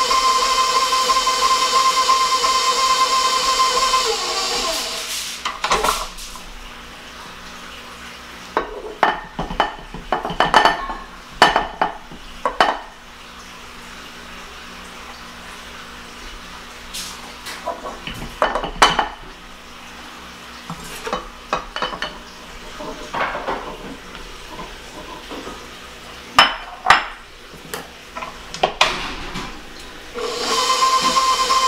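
Stand mixer motor running with a steady whine while beating the dry ingredients into the cookie dough, winding down and stopping about four seconds in. Scattered clinks and knocks of the metal beater and steel mixing bowl follow.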